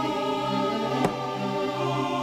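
Dramatic background score of sustained choir-like chords, with one short sharp hit about a second in.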